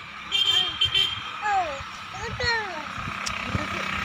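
Women's voices talking and calling out in short, rising and falling phrases, over a low steady rumble.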